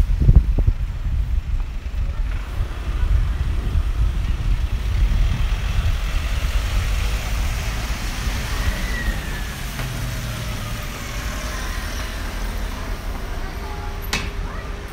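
Street traffic: vans and cars passing close by on a wet street, with steady engine rumble and a slow falling whine from a passing vehicle about two-thirds of the way through.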